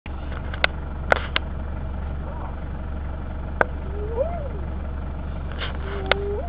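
A spotted hyena gives one faint whoop, a call that rises and then falls in pitch, about four seconds in. Under it a vehicle engine idles with a steady low hum, and a few sharp clicks sound in the first second and a half.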